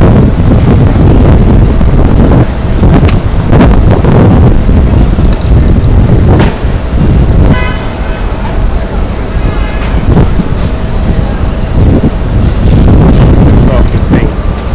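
Loud street traffic noise with a heavy low rumble, and a brief vehicle horn toot about eight seconds in.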